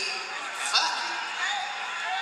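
Indistinct speech through a microphone in a large room, from a recording of a live stand-up comedy set.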